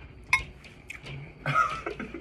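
A fork clinks once against a glass bowl, a short sharp clink. About a second later comes a brief vocal sound from the eater.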